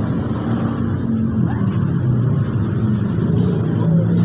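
Steady low rumble of an engine running, its pitch drifting slightly up and down.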